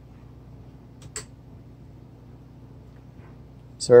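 Low steady hum in a quiet room, with one short sharp click about a second in.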